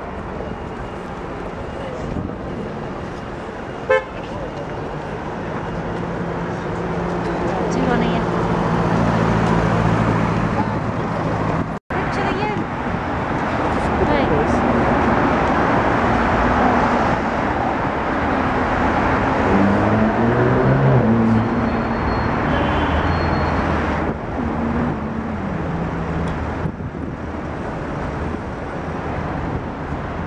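Road traffic: car engines running and passing, with a car horn sounding. An engine note rises and falls in pitch about two-thirds of the way through.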